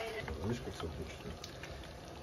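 A short, quiet voice about half a second in, then low kitchen background noise.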